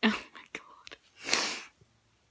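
A young woman's breathy, whispered vocal sounds: two hissy exhaled bursts, one right at the start and a longer one just over a second in.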